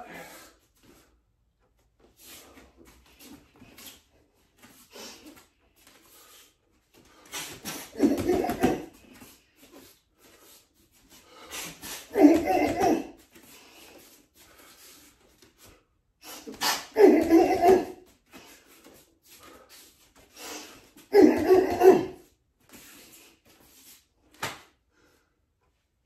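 A man's loud vocal bursts, four of them about four to five seconds apart, voiced on each repetition of a striking combination, with faint scuffs and ticks between.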